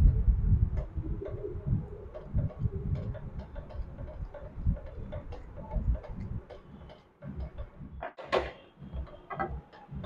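Wooden spatula stirring a thick besan and tomato batter in a metal kadhai, with a quick run of light ticks and knocks as the spatula hits the pan, and a louder scrape a little after eight seconds.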